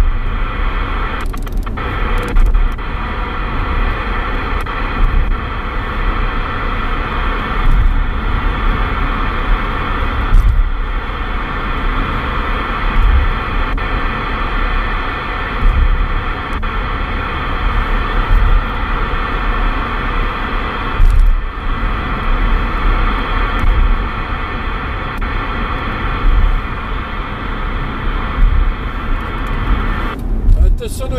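President Lincoln II+ CB radio receiver hissing with static on an empty AM channel, a steady band of noise with faint humming tones in it, over the low rumble of the car on the road. A few brief clicks cut through the hiss.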